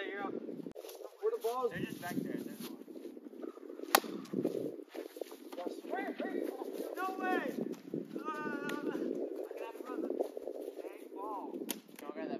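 A single sharp crack of a plastic wiffle ball bat hitting the ball, about four seconds in, with players shouting.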